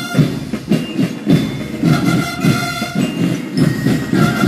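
School drum-and-bugle band (banda de guerra) playing: snare and bass drums beat a steady march rhythm, and the brass horns sound a held note about halfway through.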